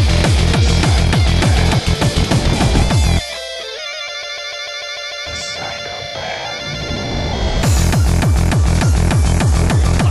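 Industrial darkcore track: a fast run of heavily distorted kick drums, each falling in pitch, stutters and then drops out about three seconds in for a short break of synth tones. The kicks come back in just before the end.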